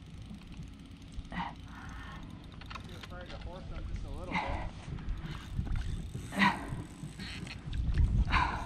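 A hooked bass struggling at the surface among lily pads: faint splashing under a steady low rumble, with a few short breathy vocal sounds.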